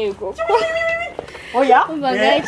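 A woman's high, drawn-out vocal call: one note held steady for most of a second, followed near the end by short, sharply rising calls.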